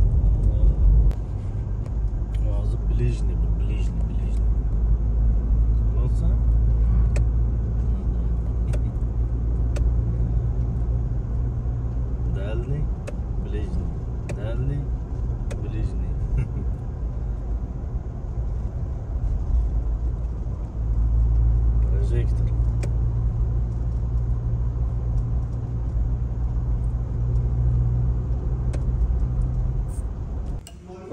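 Car driving along a road, heard from inside the cabin: a steady low rumble of engine and tyres that grows a little louder about two-thirds of the way through.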